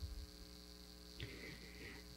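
Steady electrical mains hum with a faint steady high whine, and a couple of faint low knocks at the start.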